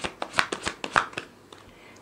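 A deck of cards being shuffled by hand, packets slapping and flicking against each other in a quick run of sharp snaps that stops a little past halfway.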